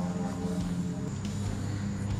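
Lawnmower engine running steadily, a low, even drone.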